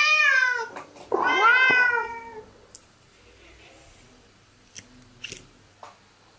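Domestic cat meowing twice, loud, one call at the start and a longer one about a second in, each arching up and then down in pitch; begging for food at the table. A few faint light taps follow near the end.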